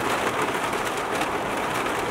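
Heavy rain pelting a small fiberglass Scamp camper trailer, heard from inside: a dense, steady hiss of drops on the shell and windows.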